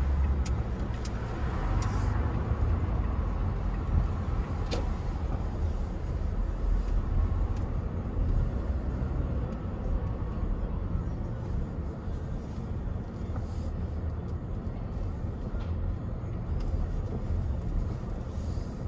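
Steady low rumble of road and engine noise inside a car as it drives and slows into a parking lot, with a few light clicks in the first few seconds.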